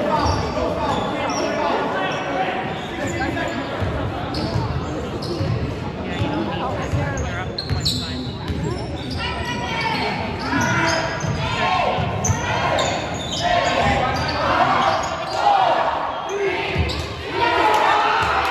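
A basketball being dribbled and bouncing on a gym's hardwood floor during a game, with players' and spectators' voices calling out, all echoing in a large hall.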